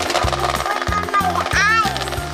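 Electric hand mixer running with its beaters in chocolate cupcake batter, a fast motor buzz under background music with a stepping bass line.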